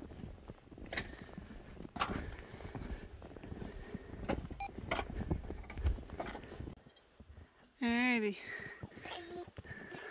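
Snow being brushed and knocked off solar panels: scattered knocks and scraping over a low rumble. About eight seconds in comes a short wavering voiced sound.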